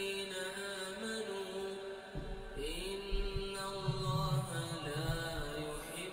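A man chanting Qur'anic recitation in long, melodic held notes, with slow bends and glides in pitch.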